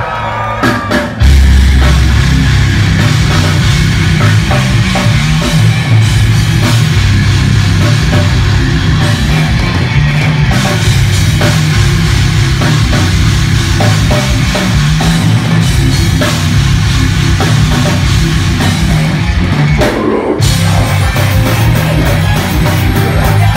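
Live heavy metal band playing: a few drum hits, then about a second in the full band comes in loud with drum kit, distorted electric guitars and bass. There is a short break near the end before the band comes back in.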